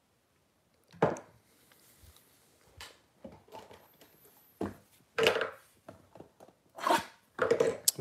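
Hands handling a cardboard trading-card blaster box on a tabletop: a string of irregular knocks and short rubs, about half a dozen over several seconds.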